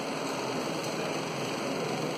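Steady whirring noise of a wall-mounted electric fan running in a lecture room, with a faint tick of chalk on the blackboard a little under a second in.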